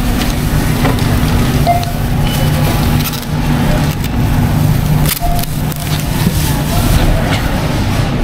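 Supermarket checkout: plastic produce bags rustling and crackling over a steady low hum, with a short register beep about two seconds in and another about five seconds in.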